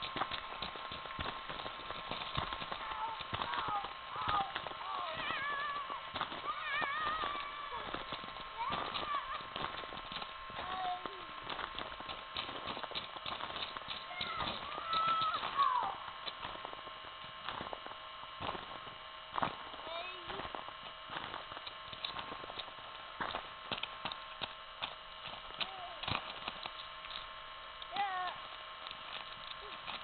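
Children's voices shouting and squealing at a distance, in bursts through the first half and loudest about fifteen seconds in, with scattered short clicks and a faint steady whine underneath.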